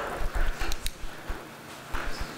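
Several light knocks and clicks over low thumps, the handling noise of someone settling into a chair at a table. It gets quieter after about a second and a half.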